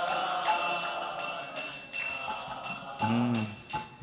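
Small brass hand cymbals (kartals) keeping a steady kirtan rhythm of about two to three ringing strikes a second, with faint group singing beneath, in the pause between the lead singer's lines of a devotional chant.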